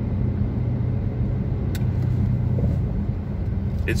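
Steady low drone of a Dodge Challenger R/T's V8 and road noise heard inside the cabin while cruising, with one faint click a little under two seconds in.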